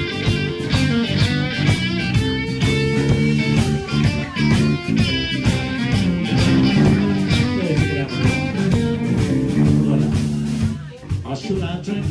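A live blues-rock band plays an instrumental break: electric guitar, bass guitar and drums, with a harmonica played into the vocal microphone. Near the end the band drops back in level.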